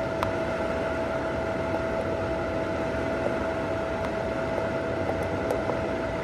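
Steady whirring hum with a constant faint whine from the running LED moving-head lights' cooling fans, with a few faint clicks as the display's menu buttons are pressed.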